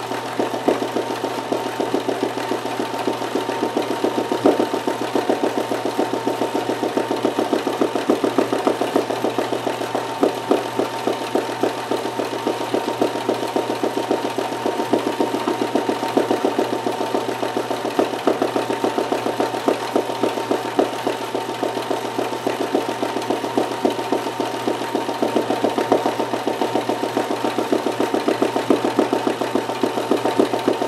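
Kenmore 158.1914 oscillating-hook sewing machine stitching steadily at speed during free-motion embroidery: a fast, even clatter of the needle and hook over the steady whine of its motor.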